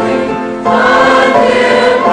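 A large church choir singing held chords, coming in louder on a new chord a little over half a second in.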